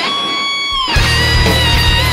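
J-rock song with guitars. The drums and bass drop out for about the first second, leaving a single high note held steady, then the full band comes back in with heavy low end and a wavering lead line.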